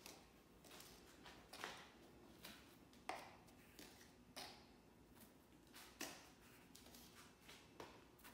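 Near silence with a handful of faint, scattered taps from a small plastic scoop knocking against a plastic container as sugary powder is scooped out and sprinkled into buckets.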